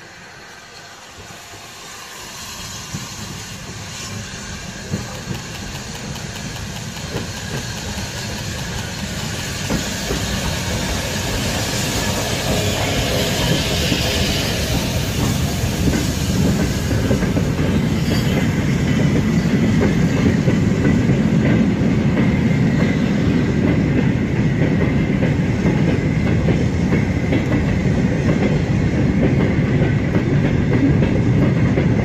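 Steam-hauled goods train approaching and passing close by. The sound builds over about fifteen seconds as the locomotive draws near, then becomes a steady rumble and clatter of the wagons' wheels over the rail joints as the train of wagons rolls past.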